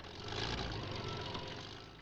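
CVR(T) Samson armoured recovery vehicle's engine running, rising in level about half a second in and then easing off, as the vehicle sits with its rear spade bedded into the sand.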